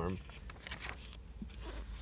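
Glossy comic-book page being turned by hand, a soft paper rustle.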